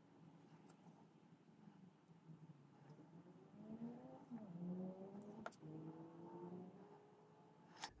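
Near silence: room tone, with a faint motor-like hum that rises in pitch in the middle and a small click or two.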